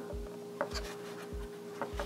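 Light handling sounds of a white styrene plastic model being turned in the hands: a few soft clicks and fingers rubbing on plastic. Faint background music with a low, regular beat sits under them.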